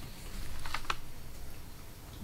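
A few light clicks and a soft rustle about half a second to a second in, over the room's low steady hum.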